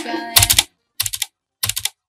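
Typing on a computer keyboard: three short bursts of quick keystrokes, each about a quarter of a second long and roughly half a second apart.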